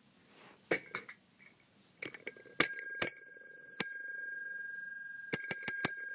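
A bell rung many times. There are a few light knocks first, then single rings about two and a half, three and four seconds in, each ringing on and fading slowly, and a quick run of rings near the end.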